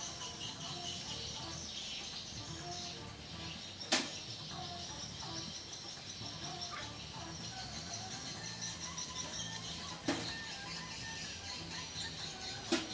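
Background music with low notes that step from one pitch to the next, broken by a sharp click about four seconds in and another about ten seconds in.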